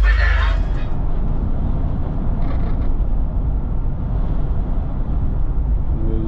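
Background music cuts off within the first second, then a 1987 Oldsmobile Cutlass Supreme Brougham is heard on the move from inside the cabin: a steady low rumble of engine and road noise.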